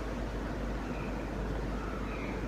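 A spoon stirring a thickening cornstarch-and-water mixture (oobleck) in a glass bowl, a steady low scraping and churning; the mix is stiffening and resisting the spoon.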